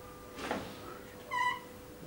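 Whiteboard marker being drawn across the board: a short scraping stroke about half a second in, then a brief high-pitched squeak of the felt tip near the middle.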